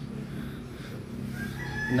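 A rooster crowing: one long, slightly falling call that starts about one and a half seconds in, over quiet outdoor background.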